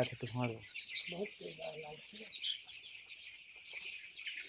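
A flock of eight-day-old chicks peeping continuously, many high-pitched cheeps overlapping.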